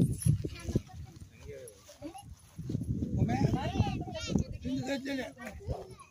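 Several people talking at once in a language the recogniser did not catch, with a few low knocks near the start.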